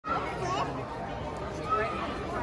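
Indistinct chatter of spectators talking among themselves in a large gym hall.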